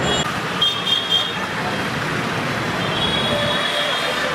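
Busy city street traffic heard from inside a moving car: a steady wash of engine and road noise, with short high-pitched tones, likely vehicle horns, about a second in and again near the end.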